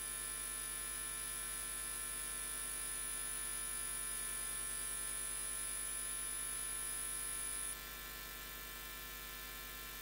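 Steady electrical mains hum and hiss on the audio line, with a thin high-pitched whine that cuts off suddenly about three-quarters of the way through, leaving the hum slightly quieter.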